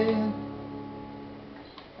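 An acoustic guitar's last chord rings out and fades slowly, with the final sung note held for a moment at the start: the end of the song. A faint click comes near the end.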